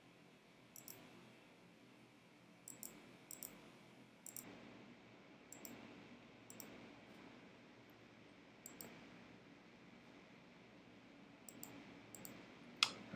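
Near silence, with faint computer mouse clicks scattered irregularly, about ten in all.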